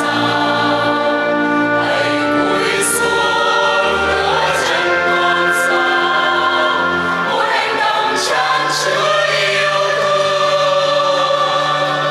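A church choir singing a slow hymn, with long held notes.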